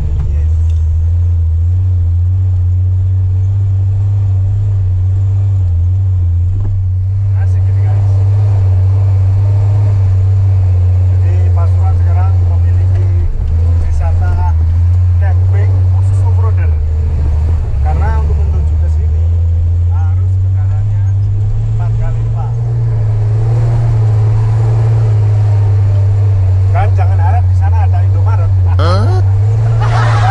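Engine of a vintage Toyota Land Cruiser driving slowly off-road, heard from inside the cab: a steady low drone whose engine speed shifts a few times, around the middle and again later on.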